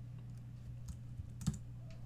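A few scattered computer keystrokes while reply text is edited, one click louder about a second and a half in, over a steady low hum.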